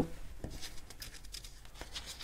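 Quiet handling of paper and a small tool on a desk: faint rustle of cardstock with a couple of light clicks, about half a second in and again near the end.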